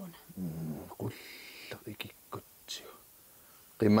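Hushed, broken speech with breathy, whispered sounds, then a voice breaking into loud speech just before the end.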